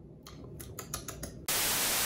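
A quick run of faint clicks, then about one and a half seconds in, loud TV-style white-noise static cuts in abruptly and holds steady.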